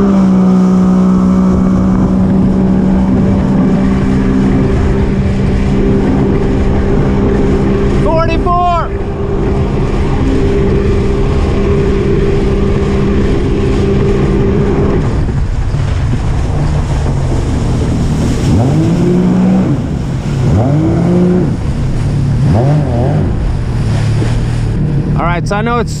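Yamaha WaveRunner jet ski engine held at full throttle on a top-speed run, a steady high pitch for about fifteen seconds. The throttle is then let off and the engine drops away, followed by a few short revs up and down. Throughout there is rushing wind on the microphone and water noise.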